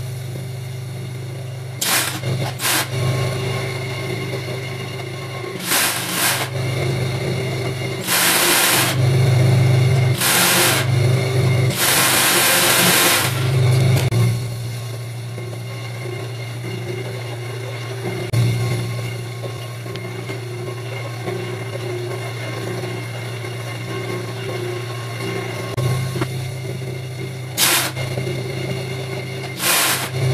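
Industrial overlock (serger) sewing machine running: its motor hums steadily, with repeated short, louder runs of stitching as fabric is fed through, the longest about twelve seconds in.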